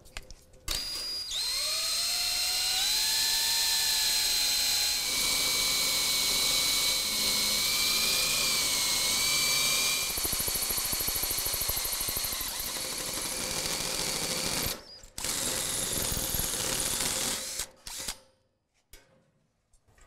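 Power drill with a one-inch hole saw cutting through the steel wall of an offset smoker. The motor spins up with a rising whine about a second in, then runs steadily under load as the saw cuts. It stops briefly about three-quarters of the way through, runs again for a couple of seconds and stops.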